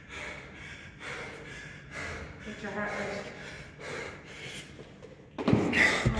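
A man breathing hard and gasping, out of breath from exhaustion after a ten-minute kettlebell set: a string of heavy breaths under a second apart, then a much louder burst about five and a half seconds in.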